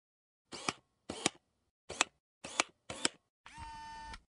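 Single-lens reflex camera shutter firing five times in quick succession, each release a short double click. Near the end a steady electronic tone follows.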